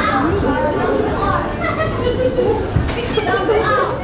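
Indistinct chatter of several people's voices, some of them high-pitched, over a low steady rumble.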